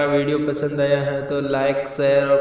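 A man's voice intoning words in a drawn-out, chant-like way, holding a fairly steady low pitch.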